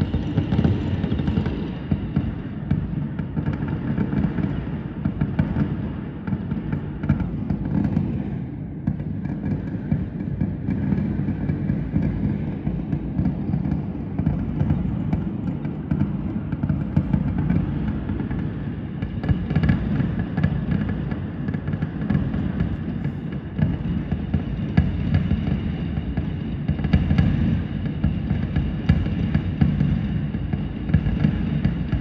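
Fireworks going off in a continuous barrage: many overlapping bangs and crackles that merge into a dense, unbroken rumble.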